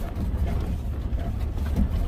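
Lifted van driving along a dirt trail, heard from inside the cabin: a steady low rumble of the engine and tyres on the gravel.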